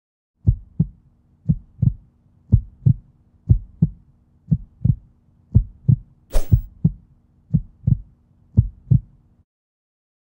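Heartbeat sound effect: slow double beats, about one pair a second, over a low steady hum, stopping shortly before the end. A short sharp hiss cuts in about six seconds in.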